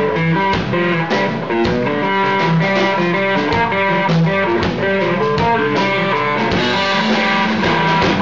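Electric guitar played through an amplifier in an instrumental passage, backed by drums, in a live small-band performance.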